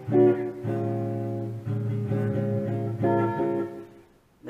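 Telecaster-style electric guitar played on its neck pickup through an Armoon Pock Rock headphone amp set to slapback echo. A few picked notes and double-stops ring out, and the last one fades away near the end.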